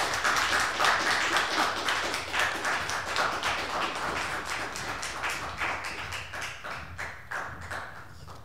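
Audience applauding: a dense patter of many hands clapping that gradually thins and fades away over several seconds.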